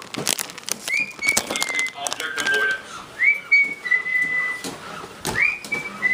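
Three whistled notes about two seconds apart, each sweeping quickly up and then held steady at the same high pitch for under a second, with a few softer, lower notes between them. Faint clicks run underneath.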